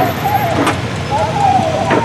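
Antique farm tractor engines idling, with muffled voices over them and two sharp clanks about a second apart.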